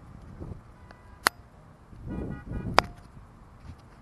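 Handling noise of a hand-held camera: two sharp clicks about a second and a half apart, with a low rumble on the microphone between them.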